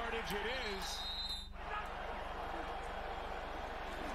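Football game broadcast audio: a faint commentator's voice, then a short dropout at an edit about a second and a half in, followed by steady stadium crowd noise.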